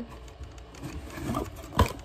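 Light rubbing and rustling of objects being handled and moved, with one sharp knock near the end.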